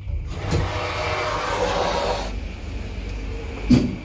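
Bonfedi roped hydraulic elevator's valve hissing loudly for about two seconds and then cutting off sharply, over a steady low hum. A short sharp clack comes near the end.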